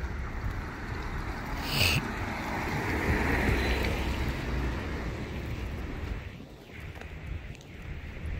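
A car passing on wet pavement, its tyre hiss and engine swelling to a peak about three to four seconds in and then fading, with a low rumble of wind on the microphone. A brief sharp click sounds just before two seconds in.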